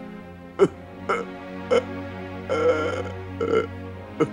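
A man crying, about five short sobs, the longest in the middle, over sustained background music.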